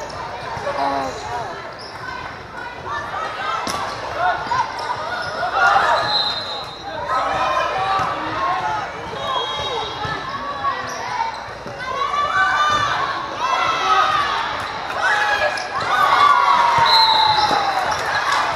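Volleyball being played in a large echoing gym: many overlapping voices of players and spectators calling and shouting, with sharp smacks of the ball. A short high whistle blast sounds about six seconds in and again near the end, the referee's whistle stopping play.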